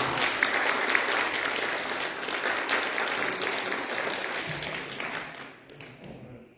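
Congregation applauding after the sermon's closing amen, dense clapping that dies away near the end.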